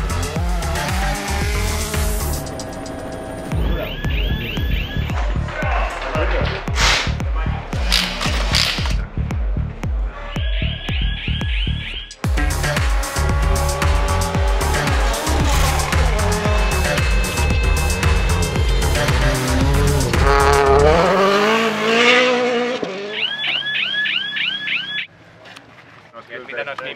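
Background music with a steady beat, mixed with a Hyundai i20 N Rally1 Hybrid rally car running hard on gravel: its engine revs rise and fall, with tyre noise. Near the end the music and car sounds drop away.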